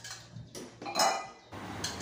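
Metal cooking utensils (a spatula and a wire strainer) scraping and clinking against a steel wok of fried anchovies, with one louder ringing clink about a second in.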